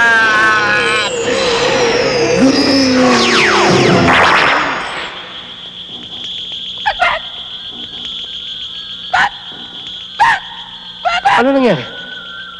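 Film sound effects for a ghostly apparition: warbling, sliding electronic tones and a rising swell for about five seconds, dropping away to a steady high whine. A few short sounds that bend in pitch break in over the whine, the last falling steeply near the end.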